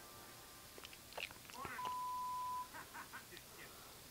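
Faint television sound from an animated show: a few short clicks and sound effects, then a steady high beep lasting just under a second, followed by voices starting.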